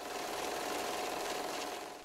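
A steady, machine-like rattling sound effect under a vintage-film transition. It sets in just after a moment of silence and eases off near the end.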